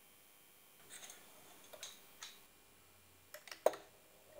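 Faint clicks and light taps from a hand-held home-built spring scale shifting against the metal carriage of a linear drive: a few scattered ones in the first half, then three quick clicks near the end, the last the loudest.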